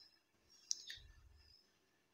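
Near silence: room tone, with one faint sharp click a little under a second in and a fainter one just after.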